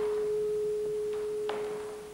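Solo clarinet holding one long, soft, nearly pure note that slowly fades near the end. A faint tap sounds about one and a half seconds in.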